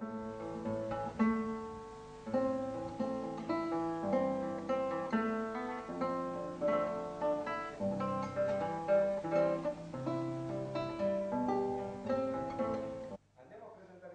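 Solo classical guitar played fingerstyle: a continuous run of plucked melody notes over bass notes, which cuts off suddenly near the end.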